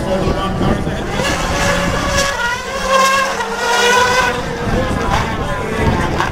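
Ford Fiesta rallycross car's engine revving hard, its pitch climbing for a few seconds as it accelerates.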